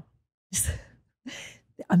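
A woman's soft breathy laugh: two short exhaled puffs of breath.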